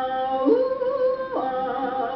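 A woman sings an octave-leap vocal exercise on one breath. She holds an 'ah' in chest voice, slides up an octave into a head-voice 'ooh' about a third of a second in, and drops back down to the chest-voice 'ah' a little after the middle.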